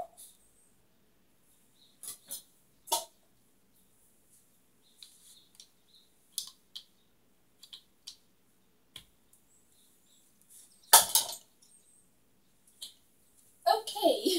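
Scattered clicks and knocks of a blender jar and its lid being handled while the stuck lid is worked loose, with one loud knock late on.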